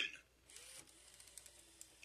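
WowWee RS Media toy robot's small motors whirring faintly, with a few light mechanical clicks, in the pause between its synthesized "Tracking human" announcements.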